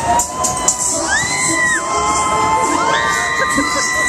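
Riders screaming on a spinning fairground thrill ride: two long high screams that rise, hold and fall, one about a second in and one from about three seconds in, over fairground music.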